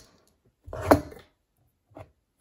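A glass jar of pennies is set down on a desk: one sharp clunk with a short rattle of coins a little under a second in, then a lighter knock at the end.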